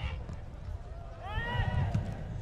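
Outdoor football pitch ambience: a low, steady background rumble, with a distant shout from a player on the pitch in the second half.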